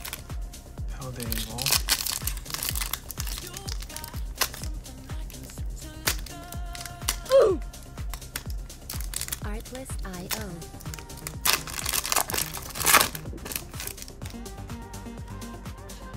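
A foil Pokémon booster pack wrapper being crinkled and torn open, in two bouts, around two seconds in and again around twelve seconds in, over background music with a steady beat.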